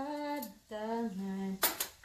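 A woman singing a slow Cebuano song, holding long notes that step downward, with two sharp clinks of kitchenware near the end.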